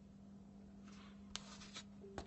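Faint rustling and a single light tap of board-game cards being gathered up from the table, over a steady low hum.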